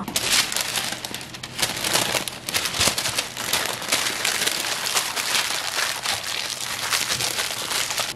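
Baking paper crinkling and rustling continuously as it is folded and wrapped by hand around a halved sweet potato.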